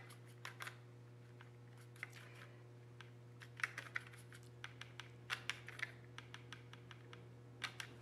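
Faint, irregular clicks and taps of a watercolour brush scrubbing and tapping in a plastic paint palette while picking up yellow ochre for a wash, over a steady low hum.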